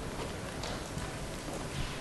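Quiet hall room tone with a few faint, irregular knocks and rustles.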